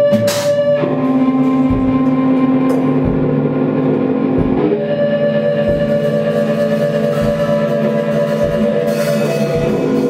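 Experimental electronic noise music: layered droning tones that shift to new pitches about a second in and again about halfway through, over low irregular thumps, with a short burst of noise at the start.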